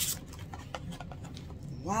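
A cardboard subscription box being opened by hand: a string of small clicks, taps and scrapes from the lid and flaps.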